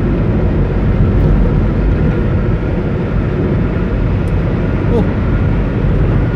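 Steady road noise inside a moving car cruising on a concrete highway: tyre roar and engine hum, heaviest in the low end.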